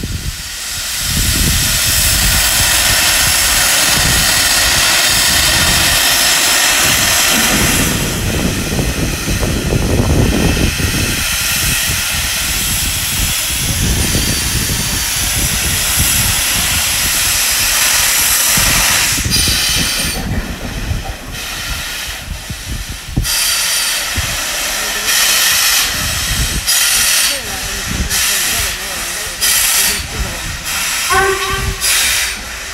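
Steam locomotives Royal Scot 46100 and Britannia 70000 giving off a loud, steady hiss of steam. From about two-thirds of the way in, the hiss breaks into separate bursts that come quicker and quicker, like the exhaust beats of a locomotive getting under way with its cylinder drain cocks open.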